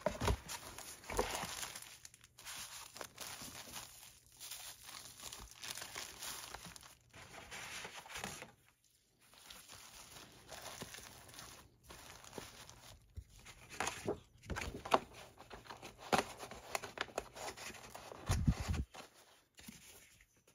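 Clear plastic packaging sleeves rustling and crinkling as they are handled, in irregular spells with short pauses. A few low thuds near the end.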